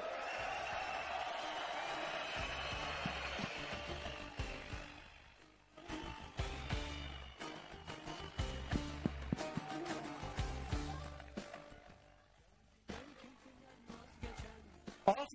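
A crowd cheering loudly and steadily for the first four seconds or so as a candidate is announced. Then music with a steady, pulsing beat plays, fading out near the end.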